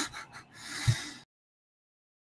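Laughter: a few short laughs trailing into a breathy exhale, then the sound cuts off to dead silence a little over a second in.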